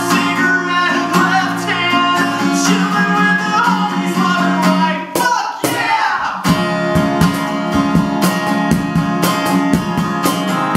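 Live acoustic guitar strummed with a man singing and a cajon keeping the beat. About five seconds in the sound briefly drops, then the guitar and cajon come back in with steady, driving hits.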